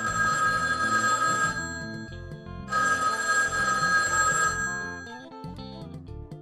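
A telephone ringing twice, each ring lasting about two seconds with a one-second pause between, over background music.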